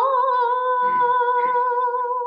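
A young woman singing unaccompanied, stepping up in pitch at the start and then holding one long high note with a slight vibrato.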